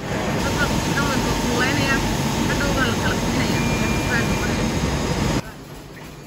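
Loud, steady running noise of a bottling plant's preform feed and stretch blow-moulding machinery, with a faint steady whine over it. It drops suddenly about five seconds in to a much quieter hum.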